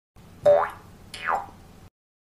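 Two cartoon-style intro sound effects: a loud springy boing about half a second in, its pitch rising, then a softer swoop just after a second that falls steeply in pitch.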